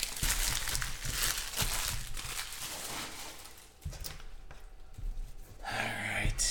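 Foil trading-card pack wrappers crinkling and cards rustling as they are handled, with small clicks and crackles; the rustling fades out about three and a half seconds in, leaving only a few faint handling sounds.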